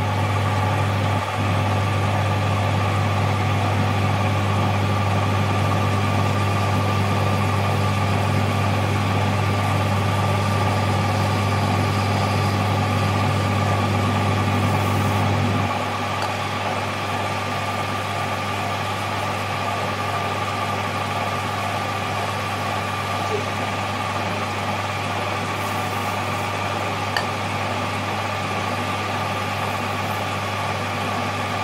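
Metal lathe running steadily, a low motor hum with a steady higher whine, while an end mill held in the tailstock drill chuck bores into the centre of an aluminium piston blank. About halfway through, the low hum drops a little.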